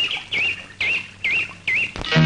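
A bird calling: five short whistled notes, each dipping down and back up in pitch, about two a second.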